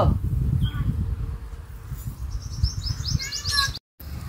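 A small bird singing a quick run of short, high, falling chirps about two seconds in, over a low wind rumble on the microphone; the sound cuts off suddenly just before the end.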